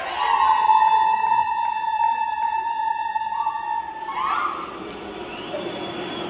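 A singing voice holds one high note steadily for about four seconds, then slides upward and stops, leaving crowd noise.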